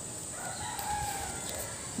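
A rooster crowing faintly once, one long call held for about a second and then falling away.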